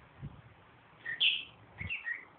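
Pet lovebird chirping: a loud high chirp about a second in, then shorter chirps near the end, with a soft low thump just after the start.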